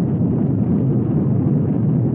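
Dense, distorted wall of sound from an extreme metal album track: a loud, churning low rumble with no clear notes or pitch.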